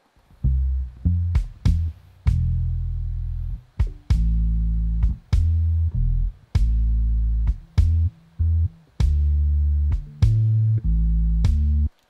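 Soloed kick drum and bass tracks of a rumba backing track playing back: a light kick hitting over long, sustained low bass notes, each ringing on to fill a whole beat before the next note comes in.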